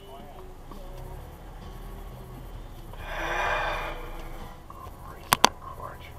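Low steady rumble inside a car cabin, with a rush of noise that swells and fades about three seconds in, and two sharp clicks in quick succession near the end.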